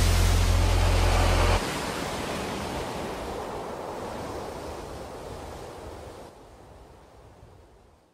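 Sea surf washing against a rocky shore, a steady rush that fades out gradually to near silence near the end. A deep, steady low tone lies under it and cuts off suddenly about one and a half seconds in.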